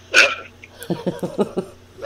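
A person laughing: one short burst near the start, then a quick run of about seven short laugh pulses.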